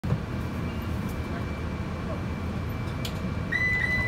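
Rear exit door chime of a New Flyer Xcelsior XN40 bus, sounding as the doors are about to close: two short high beeps and then a longer held tone near the end. It plays over the bus's steady low rumble, with a sharp click shortly before.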